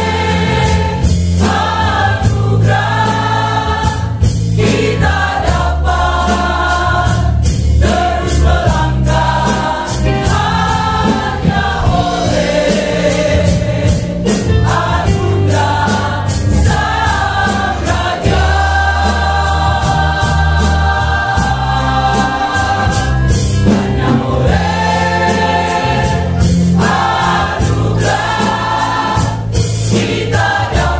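Mixed church choir of men and women singing a gospel song in Indonesian in harmony over a steady beat, with a long held chord a little past the middle.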